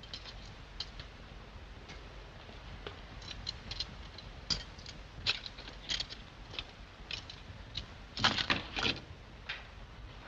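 Quiet, scattered clicks and knocks of movement and handling over the steady hiss of an old film soundtrack, with a louder flurry of knocks near the end.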